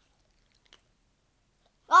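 Quiet at first, with one faint short click a little before the middle as a dog licks. Right at the end a woman lets out a loud, drawn-out 'oh' of disgust, reacting to the dog's lick getting into her mouth.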